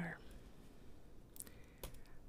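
A pen drawing faintly on sketchbook paper, with two short, sharp clicks about half a second apart in the second half.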